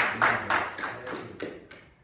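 Rhythmic hand clapping, about three or four claps a second, fading and stopping near the end. It is applause given as a praise offering to the Lord.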